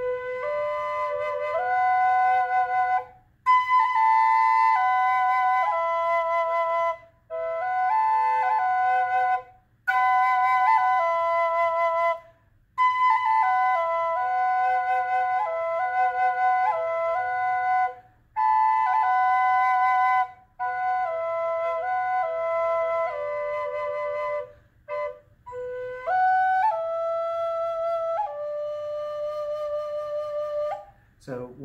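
Wooden A-frame Native American drone flute played: a steady drone note is held on one chamber while a melody steps between notes on the other. The playing comes in phrases of a few seconds with short pauses between them.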